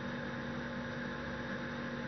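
Steady low electrical hum with a faint even hiss: background room tone, no distinct events.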